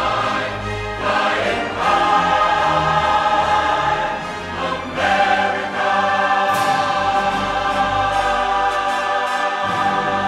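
A choir singing long, held chords over an orchestral accompaniment.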